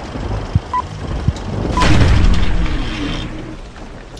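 Film countdown-leader sound effect: a crackling, hissing film-projector noise bed with a short beep about once a second, two of them here. The second beep, near two seconds in, comes with a loud boom that dies away slowly.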